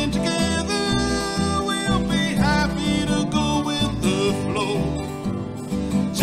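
Live acoustic country band playing: an acoustic guitar, a plucked upright bass line and a second guitar together in a steady rhythm.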